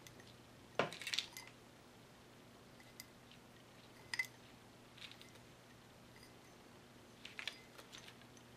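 Faint, scattered clicks and clinks of a wine glass and a strand of faux pearl beads being handled as the pearls are wound around the glass stem, the loudest cluster about a second in and a few lighter ticks after.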